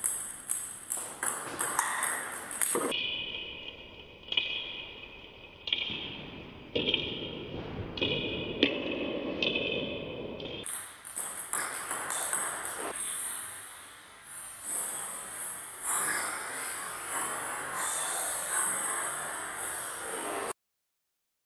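A table tennis ball being hit by bats and bouncing on the table in a run of forehand flick exchanges: a quick series of sharp pings and clicks several times a second. For a stretch in the middle the clicks ring lower in pitch.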